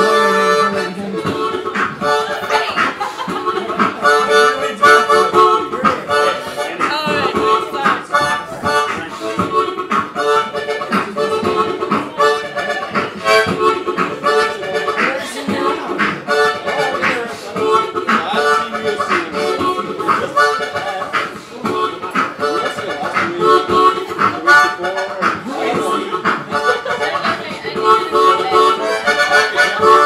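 Harmonica beatboxing: a player blows and draws chords on a harmonica while making percussive beatbox sounds through it, in a steady, driving rhythm.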